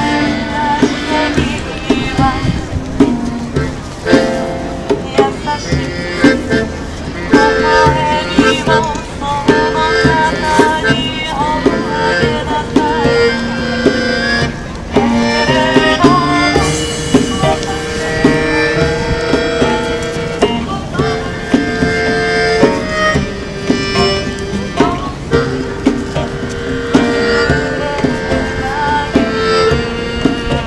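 A small live band playing upbeat music: acoustic guitar with hand percussion and a melody line, keeping a steady beat.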